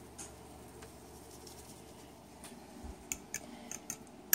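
Quiet room tone with a few faint, irregular clicks and light handling noises, closer together near the end.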